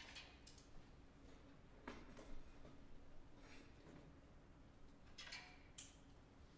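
Near silence in a hall, broken by a few faint clicks and rustles, the sharpest near the end, over a faint steady hum.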